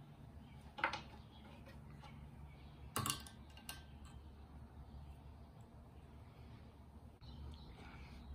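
A few light clicks and taps as pencils holding strings are handled and laid across the metal rims of glass mason jars: one about a second in, then two close together around three seconds in, over a faint steady room hum.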